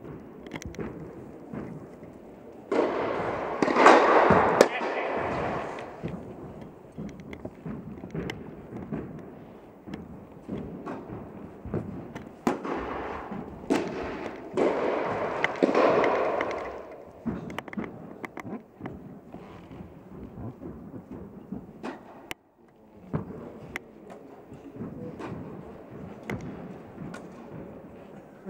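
Tennis balls struck by racquets and bouncing, heard as sharp pops scattered throughout and echoing in an indoor tennis hall. Voices are in the background, with two louder spells of noise about three seconds in and again a little before the middle.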